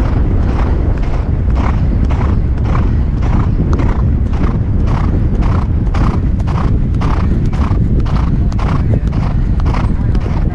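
Thoroughbred gelding galloping on turf: an even beat of its stride about twice a second, with low wind rumble on the helmet camera's microphone.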